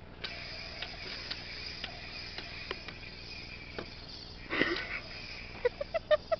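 Toy lightsaber blades clacking together in a mock sword fight: about half a dozen sharp knocks spread out, over a steady high hiss, with a louder noisy burst about four and a half seconds in.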